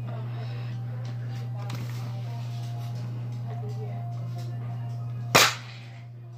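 A spring-powered toy foam-dart blaster firing a single shot with a sharp crack about five seconds in, over a steady low hum.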